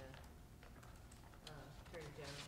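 A nearly quiet meeting room with faint, indistinct speech and a few light clicks.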